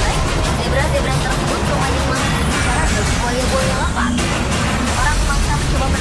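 Indistinct voices and background music over a steady rushing wash with a low rumble.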